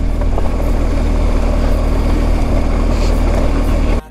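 BMW R1250GS Adventure's boxer-twin engine running steadily under way, with an even rush of wind and tyre noise from the gravel track.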